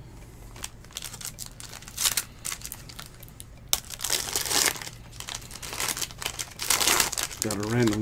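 Foil wrapper of a trading-card box topper crinkling in irregular bursts as it is handled and pulled open by hand, loudest about four and seven seconds in.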